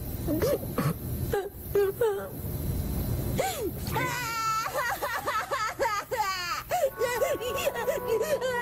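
A cartoon character's voice whimpering and sniffling, then bursting into loud, wavering wailing about four seconds in and sobbing on after it. Steady music notes come in near the end.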